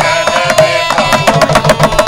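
Carnatic devotional kriti: a woman singing a melodic line over a mridangam playing quick, steady strokes.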